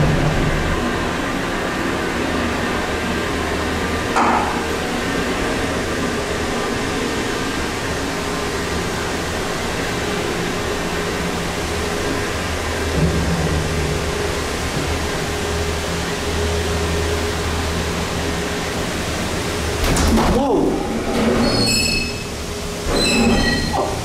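Westinghouse traction freight elevator car travelling up the hoistway: a steady running rumble with a low motor hum. About twenty seconds in the car comes to an abrupt stop with a knock, followed by a few short high-pitched sounds.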